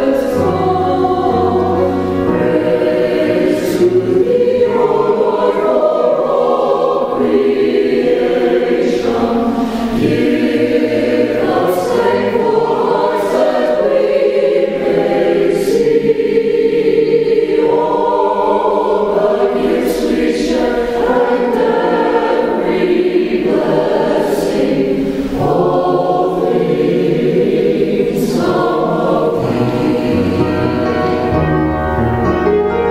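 Choir singing a hymn in long sustained phrases, one sung line following another.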